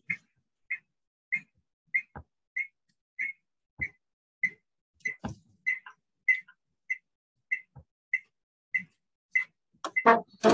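A short, high chirp repeating at a very even pace, about every 0.6 seconds, with a few faint low knocks in between.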